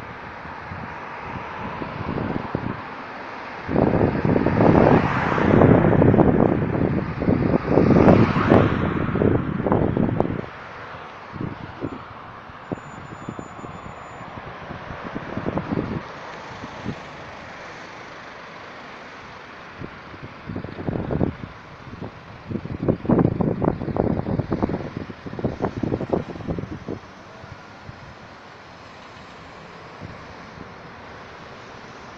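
Steady road traffic as cars drive past on a multi-lane road. Two long spells of rough, buffeting noise, one a few seconds in and one in the second half, fit wind gusting on the phone's microphone.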